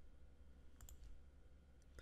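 Near silence with faint computer clicks: two quick clicks about a second in and two more near the end.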